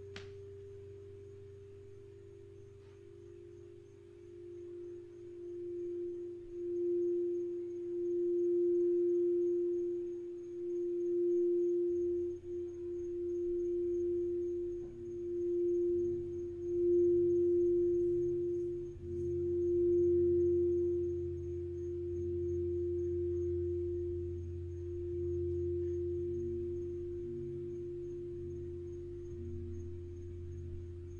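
Crystal singing bowl played around its rim with a mallet: one steady sung tone that swells and eases in waves, while an earlier, slightly higher bowl tone fades away. A low gong hum comes in beneath it about halfway through and grows.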